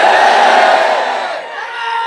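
A large crowd of voices shouting together in a held chant, tapering off about a second and a half in.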